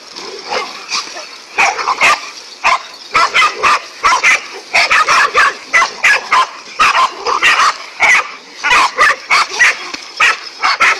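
Several dogs barking and yipping in an excited, aggressive chorus at a snake they have surrounded. Sparse barks at first, then from about a second and a half in, a rapid overlapping volley of several barks a second.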